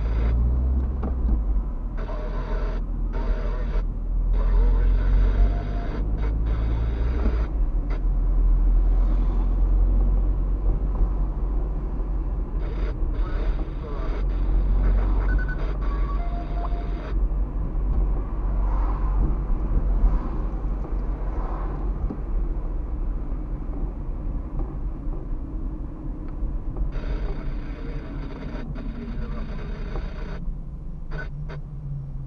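A car driving in city traffic, heard from inside the cabin: a steady low engine and road rumble, with stretches of louder tyre hiss.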